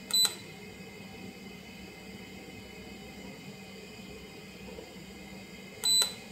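Handheld 3D scanner giving two short, high electronic beeps, one just after the start and one near the end, over a faint steady hum.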